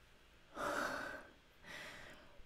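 A woman's breathy gasp about half a second in, then a softer breath near the end.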